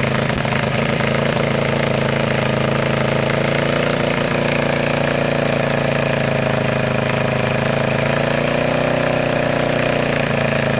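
The snowmobile's nitromethane-fuelled 1325 cc four-cylinder Kawasaki engine idling steadily, its pitch rising slightly near the end.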